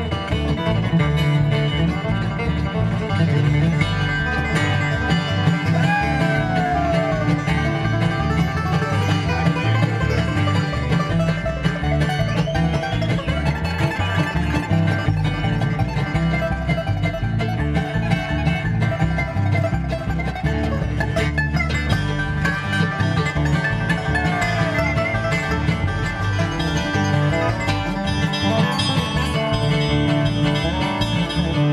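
Bluegrass band playing an instrumental passage live, with acoustic guitar, five-string banjo, dobro and mandolin, steady and continuous.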